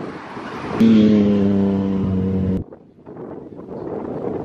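A motor vehicle's engine, a loud steady drone that comes in about a second in over road noise and cuts off suddenly before the halfway mark, followed by quieter outdoor noise.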